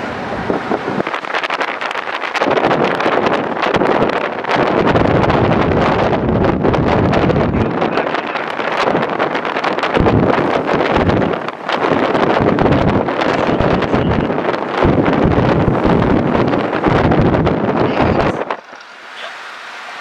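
Wind buffeting the microphone from a moving car, over road noise. It comes in loud, uneven gusts and drops away sharply near the end.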